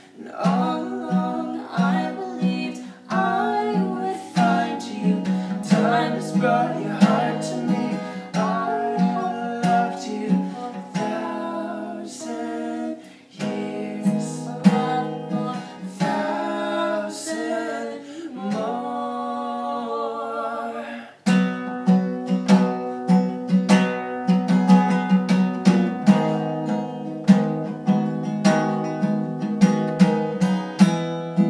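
Acoustic guitar strummed under a man and a woman singing a slow ballad together. The singing stops about two-thirds of the way through, and the guitar carries on alone with a steady strum.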